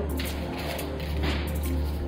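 Background music over a low steady hum, with two short soft scrapes as a spelt dough bun is turned in a steel bowl of poppy seeds.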